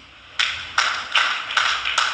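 Hand claps in an even rhythm, about five claps at roughly two and a half a second, starting about half a second in.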